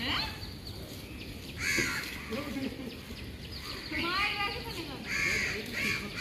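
Crows cawing, several separate harsh caws at intervals: one about two seconds in, another about four seconds in, and a third a second later.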